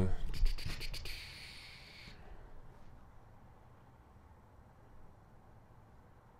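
A close microphone being handled on its boom arm: a quick run of clicks with a scraping rustle over the first two seconds, then faint room tone.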